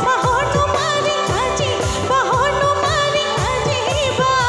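A woman singing a Bihu song live through a PA system, her voice wavering and ornamented, backed by a band with bass guitar and a steady, quick drum beat.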